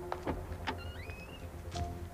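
Background music with held notes and a short stepped rising line, over a few sharp clicks and knocks from a car door opening and a person climbing into the driver's seat.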